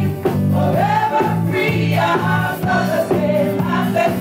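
A group of women singing a gospel song together into microphones, amplified through the church loudspeakers, over low accompanying chords that repeat in a steady rhythm.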